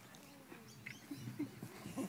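A few faint bird chirps over quiet, indistinct talk from a small group of people.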